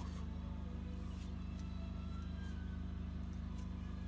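A steady low drone with a buzzing undertone, holding an even level throughout.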